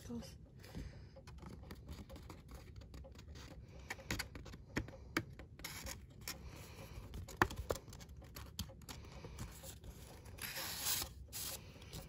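Paper and cardstock being handled: card sheets rubbing and sliding against each other with a few small taps, and a longer paper slide a little before the end.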